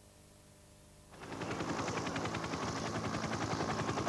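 Near silence for about a second, then a helicopter's rotor comes in as a fast, steady chopping.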